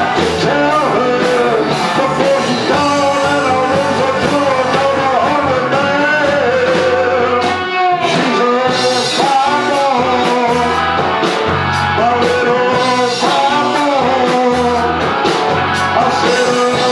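Live classic-rock band playing a song: a male lead vocal over electric guitar, drums and keyboard, with a brief dip in the sound about halfway through.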